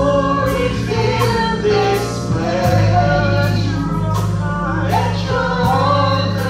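Live gospel singing: a woman leads on a microphone with a small group of backing singers, over sustained low instrumental notes and a regular percussion beat.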